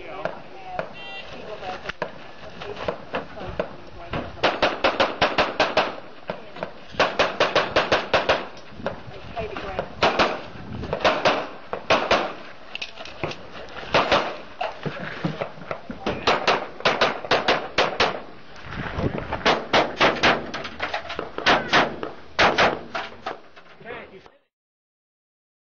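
Handgun shots fired in quick strings of several shots each, separated by pauses of a second or two.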